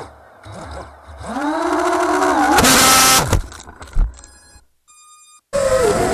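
FPV racing quadcopter's motors and propellers whining, the pitch rising and falling with throttle. A loud burst of noise comes about two and a half seconds in, then the whine drops away and there is a sharp knock. A short steady high tone follows, then another flight's motor whine starts near the end.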